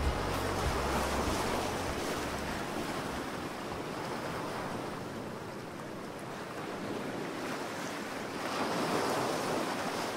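Ocean surf breaking on a sandy beach: a steady wash of waves that swells about a second in and again near the end.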